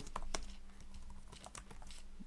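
Computer keyboard being typed on: an irregular run of key clicks.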